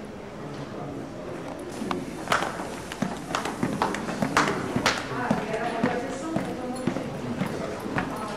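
Footsteps going down stairs and across a floor, sharp steps about two a second from about two seconds in, over indistinct background voices.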